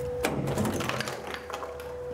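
Quick, irregular small clicks and rattles, thickest in the first second, over a faint steady hum.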